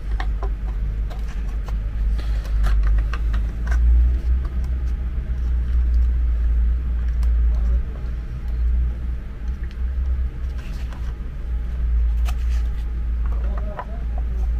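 A loud, steady low rumble of unclear origin, with scattered light clicks and knocks of a plastic charger housing being handled as its circuit board is slid into the case and the case is closed.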